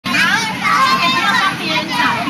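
Several young children's high-pitched voices talking and calling out over one another while they play.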